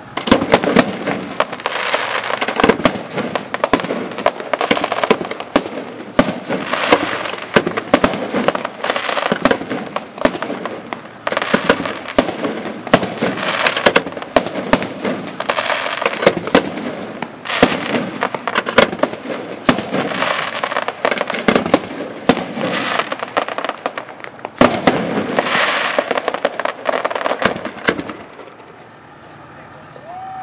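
Aerial fireworks shells bursting in a rapid, continuous volley of sharp reports over a steady din. It starts suddenly and stops abruptly near the end.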